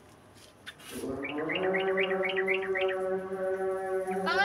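A domestic pigeon calling, starting about a second in: one long steady note with quick chirps repeating over it about five times a second.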